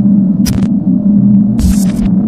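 Electronic glitch sound effect: a loud, steady electrical buzz with short bursts of static crackle, one about half a second in and another near the end.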